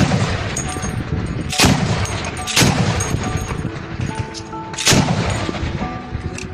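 Heavy gunfire: four loud shots spaced one to two seconds apart, each trailing off in a low rumble, with fainter cracks between them.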